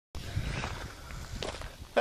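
Footsteps crunching on gravel, a person walking up to the camera.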